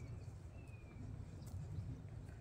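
Hands digging and scooping in raised-bed soil and wood-chip mulch, a faint rustle over a steady low rumble. A short, faint, high whistle falls slightly in pitch about halfway through.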